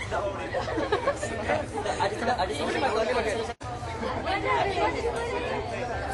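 Chatter of many people talking at once in a crowded room, voices overlapping without any single speaker standing out. The sound breaks off completely for an instant a little past halfway.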